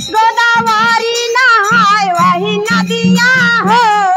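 A woman singing a devotional bhajan into a microphone, her voice sliding and wavering around the notes, over a low rhythmic accompaniment.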